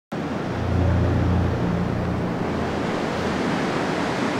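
Ocean surf, waves breaking on a beach as a steady wash of noise, with a low hum underneath that fades out about two seconds in.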